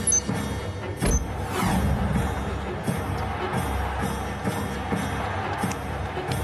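Tense action-film background score, with a heavy hit about a second in followed by a falling whoosh. Near the start, two short high electronic beeps about a second apart come from a bomb's digital countdown timer.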